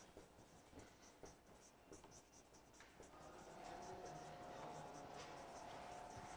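Marker writing on a whiteboard, heard faintly as short strokes and scratches. A faint steady tone comes in about halfway through.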